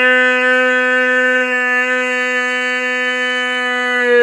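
A man's voice holding one long, loud note at a steady pitch.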